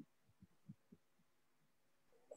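Near silence, with a few faint, soft low thumps in the first second.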